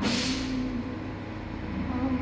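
Coffee-shop background noise: a short burst of hissing at the start, over a steady low hum and room noise.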